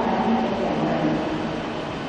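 A woman's voice reading over a public-address system in a large, echoing hall, softer here between louder phrases, over a steady low rumble of room noise.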